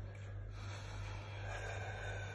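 A person breathing heavily through the cold of ice-water immersion, a long breath starting about half a second in, over a steady low hum.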